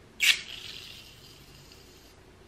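Aerosol can of hair mousse dispensing foam: a short sharp hiss of spray just after the start, then a softer hiss that slowly fades.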